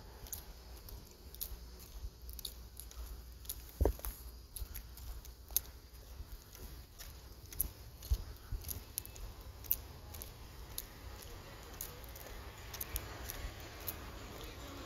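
Handling noise from a hand-held phone microphone while walking: scattered soft clicks and rubs over a low rumble, with a louder thump about four seconds in and another around eight seconds.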